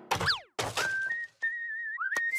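A quick falling swoop, then a cartoon character whistling one steady, slightly wavering note that steps up a little in pitch about a second in.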